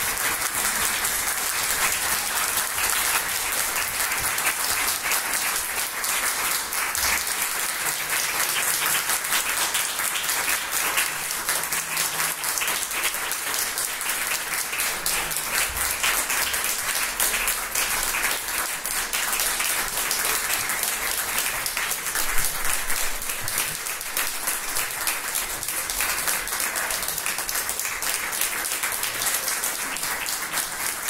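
Audience applauding: dense, steady clapping at an even level throughout.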